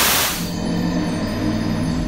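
The tail of a loud rushing of flame from a water-on-hot-oil grease-fire fireball, which about half a second in gives way to a low, ominous held musical tone, a game-style 'you die' sting.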